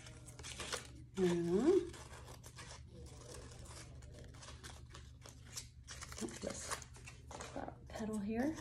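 Scissors snipping through painted paper, a run of short cuts with the rustle of the sheet being turned. A brief hum of a voice about a second in.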